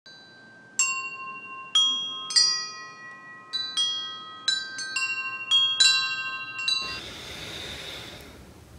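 Chimes struck one at a time in an unhurried, irregular sequence, about a dozen bell-like tones of different pitches, each ringing on as the next sounds. They stop about seven seconds in, leaving faint room hiss.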